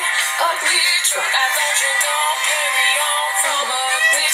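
A recorded song: a solo singer's voice gliding through a sung melody over continuous instrumental backing.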